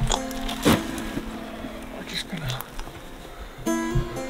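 Background music: plucked acoustic guitar notes ringing on, with a new chord struck near the end.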